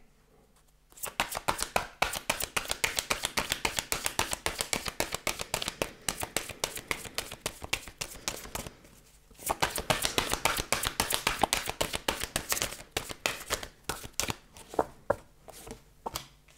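A deck of Lenormand cards shuffled by hand: long runs of rapid, soft card flicks, with a short pause about nine seconds in, thinning out near the end.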